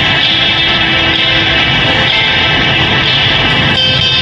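Karaoke backing track playing an instrumental passage, loud and steady, with no singing.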